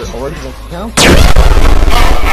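A sudden, very loud blast-like sound effect about a second in, opening with a falling sweep and then holding loud.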